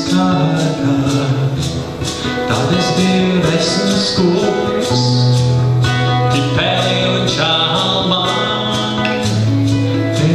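A man singing a slow song to his own acoustic classical guitar accompaniment, amplified through a stage PA.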